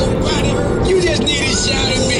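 Song from a CD playing on the car stereo, with a woman's voice over it and steady road and engine noise inside the car cabin.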